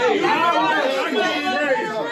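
Several men's voices talking and calling out over one another: crowd chatter reacting between rap battle bars.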